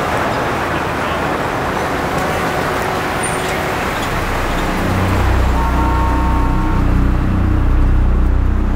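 Road traffic noise; about five seconds in, a vehicle engine's low drone comes in close and louder.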